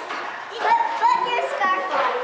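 Young children's voices chattering, several overlapping at once.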